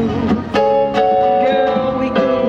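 A small band playing a Christmas tune live: guitar strumming under held melody notes.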